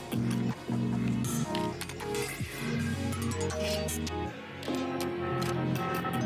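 Electronic dance music from a live DJ set mixed on a DJ controller, with a falling pitch sweep about two seconds in and the deep bass dropping away partway through.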